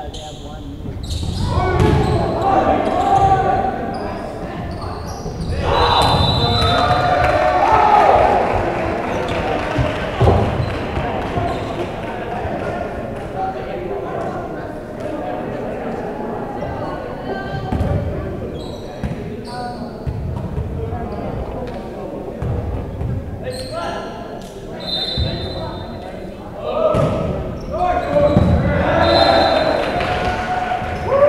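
Indoor volleyball match: sharp slaps of the ball being hit and landing on the hardwood floor, mixed with players shouting and calling out, all echoing in a large gym.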